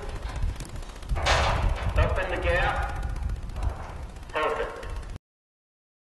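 Indistinct, muffled speech over a heavy low rumble on an old videotape soundtrack, cutting off suddenly about five seconds in.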